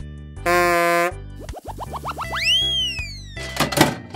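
Cartoon sound effects over children's background music: a short buzzy horn-like tone about half a second in, then a quick run of rising boings, a whistle sliding up and back down, and a clatter of clicks near the end, the loudest moment.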